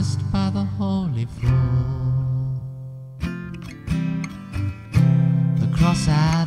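Song accompaniment on a strummed acoustic guitar between sung lines. The last sung word trails off in the first second, and the playing dips quieter in the middle before the strumming picks up again.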